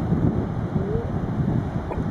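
Wind buffeting the microphone, an uneven low rumble that comes and goes in gusts.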